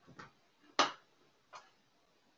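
Three short, sharp clicks or taps spaced a little under a second apart, the middle one the loudest.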